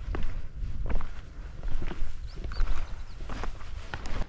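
A hiker's footsteps walking down a mountain trail: irregular steps about a half second apart.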